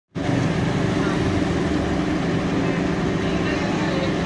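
Steady low rumble of a vehicle engine idling, with faint voices in the background.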